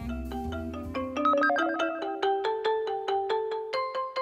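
Background music: a light tune of short, struck, bell-like notes, played one after another at several pitches, each ringing on briefly.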